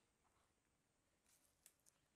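Near silence, with a few faint ticks near the end.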